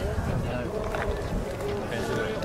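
People talking faintly in the background, with wind rumbling on the microphone.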